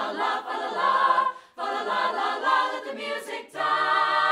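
Mixed choir of young voices singing: two short phrases with brief breaths between them, then a long held chord begins near the end.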